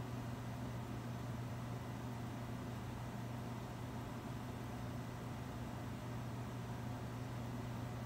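Steady low hum with a faint even hiss: room background noise, with no distinct sounds.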